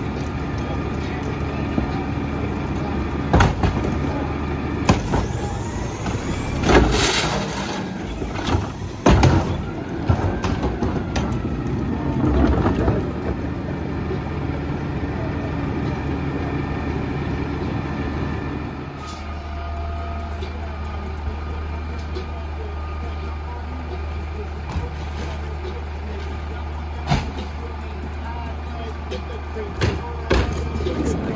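CNG-powered Mack LEU garbage truck with a McNeilus Pacific front-loader body running at idle, with several sharp knocks and a hiss in the first ten seconds as a wheeled cart is tipped into its carry can. About 19 seconds in the engine note deepens and steadies as the truck pulls forward.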